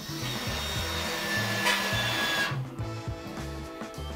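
Electric motorcycle center stand's motor running under battery power with a high whine as the stand drives out, stopping abruptly about two and a half seconds in before the stand is fully extended.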